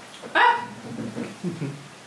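A dog barks once, a single short loud bark about a third of a second in.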